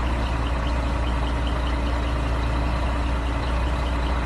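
Heavy truck engine running steadily with a deep, even hum while the truck's mounted crane boom is raised.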